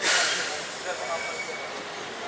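A vehicle's air brake releasing: a sudden loud hiss of air that fades away over about half a second.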